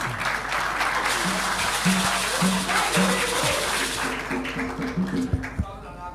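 Audience applauding after a speech, thinning out after about four seconds. A run of short, repeated low musical notes plays over it and steps up in pitch near the end.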